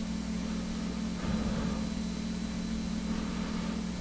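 Steady low electrical hum with an even hiss, the background noise of a computer recording setup, with a slight faint swell about a second in.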